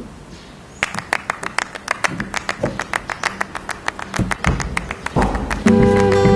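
A rapid run of sharp taps or clicks, about six a second, for several seconds, with a few dull knocks among them. Near the end, music with sustained plucked-string notes comes in.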